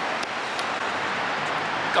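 Steady hiss of city street traffic, with no clear single vehicle standing out.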